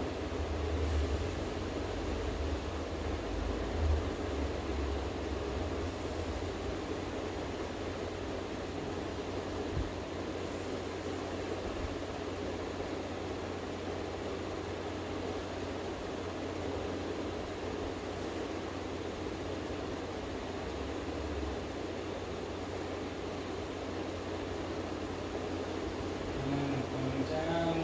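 Steady room noise from ceiling fans running, with a low rumble underneath that rises and falls; a faint single knock about ten seconds in.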